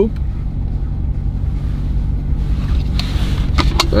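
Steady low hum of a car engine idling, heard from inside the cabin. About two and a half seconds in comes a soft rush of powder poured from a scoop into a plastic shaker bottle, with a few light clicks near the end.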